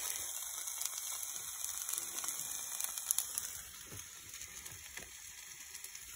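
Frozen diced potatoes sizzling in a frying pan: a soft, steady hiss with small crackles that grows quieter about halfway through.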